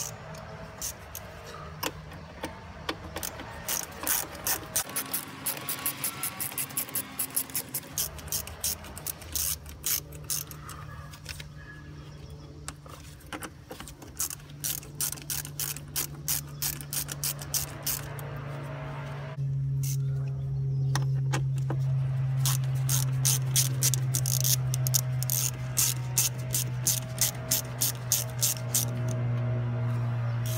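Ratchet wrench clicking in quick runs of strokes with short pauses between, loosening the worm-drive hose clamps on an intercooler charge pipe.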